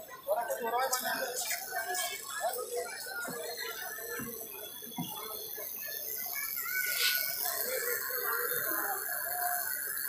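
Indistinct background voices: people talking around the spot, with no clear words.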